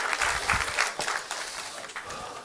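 Lecture-hall audience applauding, a dense patter of many hands that thins out and fades over the two seconds.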